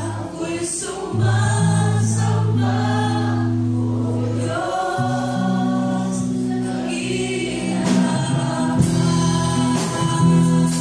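Live worship song in Tagalog: a woman sings the lead into a microphone, with other voices singing along. A band backs her, with electric bass holding long low notes that change pitch every second or two.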